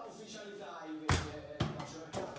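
A small ball kicked down a tiled hallway: one sharp thump about a second in, then a lighter knock half a second later.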